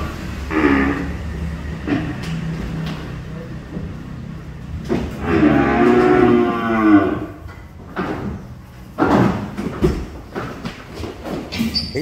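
Young cattle mooing: a short call about half a second in, then one long, rising-and-falling moo from about five to seven seconds, over a steady low hum and a few knocks.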